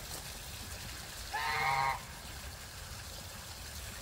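A domestic goose gives one short honk about a second and a half in, over the steady trickle of water running into a small pond.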